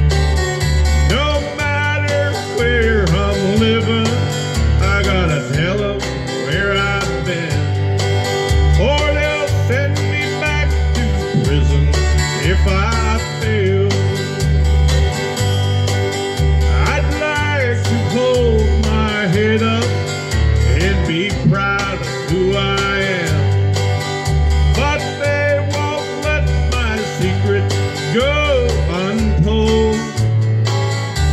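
Harmonica played into a handheld microphone, its notes bending up and down, over a country backing track with guitar and a steady bass beating about twice a second.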